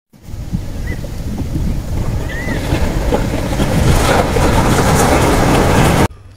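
Loud, steady rushing noise like surf, swelling up within the first second and holding, with a couple of faint short chirps in the first few seconds; it cuts off abruptly at the end.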